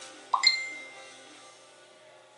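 A short bright chime about half a second in, ringing out and fading over about a second, over faint background music.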